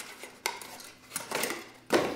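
Tower CPU cooler being lifted out of its cardboard packaging: cardboard scraping and light metallic clinks from the finned heatsink, with short clicks about half a second in and a sharper one near the end.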